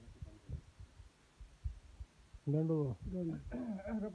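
Dull low thuds for the first couple of seconds. Then a man's voice speaking from about two and a half seconds in.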